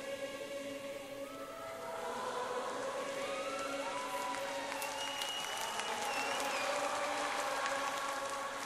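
Sustained choral singing over a held musical chord as a worship song closes. An audience's applause and cheering build from about three seconds in.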